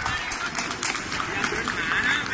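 Footballers' voices shouting and calling out on the pitch during play, in short bursts, with a few sharp knocks.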